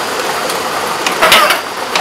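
Lottery draw machine running: many balls clattering steadily against each other and the clear plastic walls of its mixing chambers, with a denser burst of clacks a little past halfway.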